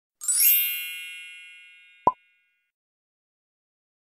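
Edited-in outro sound effects: a bright, shimmering chime that fades away over about two seconds, then one short pop.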